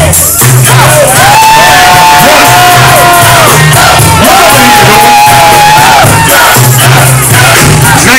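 Loud hip-hop music over a PA at a live show, a heavy pulsing bass beat under long held vocal notes, with a crowd shouting and cheering along. The recording is close to full scale throughout.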